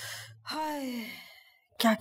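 A woman draws an audible breath, then lets out a long voiced sigh that falls in pitch over about a second, an exasperated sigh before a grumbling lament. Her speech begins near the end.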